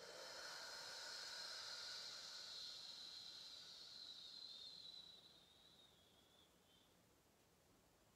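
A person's long, soft exhale with a hiss, starting suddenly and fading out after about five seconds.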